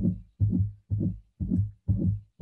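Recorded heart sounds of aortic stenosis played at one and a half times speed: low lub-dub beats about two a second, with a crescendo-decrescendo (diamond-shaped) systolic murmur starting shortly after S1. The murmur comes from blood forced through a narrowed aortic valve.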